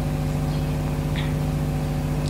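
Steady low background hum made of several even tones, holding the same pitch and level throughout.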